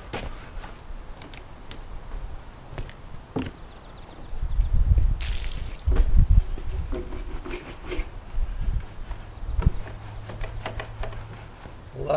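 A detail brush scrubbing and knocking around the engine and front end of a Harley-Davidson trike during a hand wash. Scattered clicks and knocks, with low rumbling thumps in the middle and a brief hiss about five seconds in.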